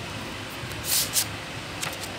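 Sheet of paper rustling as it is handled: two short hissing rustles about a second in, and a fainter one near the end.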